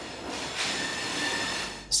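Steel wheels of a slow-moving two-unit locomotive set squealing on curved yard track. A steady high squeal swells about half a second in and fades just before the end, over a hiss of rail noise.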